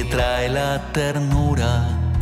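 A man singing a song with guitar accompaniment, holding long notes that slide in pitch.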